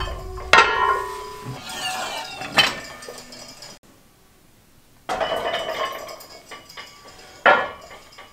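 Metal weight plates clanking as they are put back on a gym rack: about four sharp metallic clanks, each with a short ringing tail, with a brief silent gap midway.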